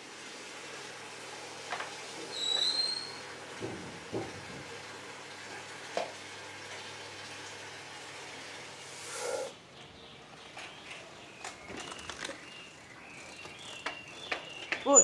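Quiet indoor ambience with a few scattered knocks and a short, high chirp about two and a half seconds in, then a brief rushing swell around nine seconds.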